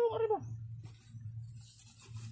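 A short call that falls in pitch, about half a second long, right at the start, over a steady low hum.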